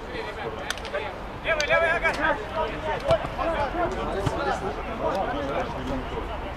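Footballers' voices calling out across the pitch, indistinct and scattered, with the loudest shout about a second and a half in.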